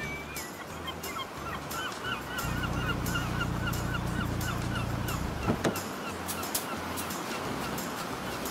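Beach sound effects for a cartoon: a bird calls in short, repeated curved notes, about three a second, for the first five seconds or so. A low steady engine-like hum from the cartoon car joins from about two and a half seconds and stops a little after five.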